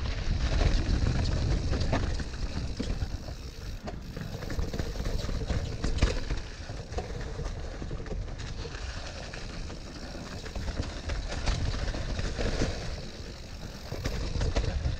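Mountain bike riding over a rough trail: a continuous low rumble of tyres rolling on dirt and stones, broken by frequent clicks and knocks as the bike rattles over the bumps.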